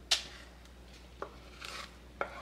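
A utensil clinks sharply once against a heavy enamelled cast-iron pot, followed by a light tick and a short scrape near the end, as thick fudge is worked out of the pot.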